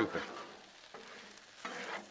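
Two metal spatulas stirring and scraping pasta and meat sauce on a Blackstone griddle's steel cooktop over a low sizzle, with a louder scrape near the end.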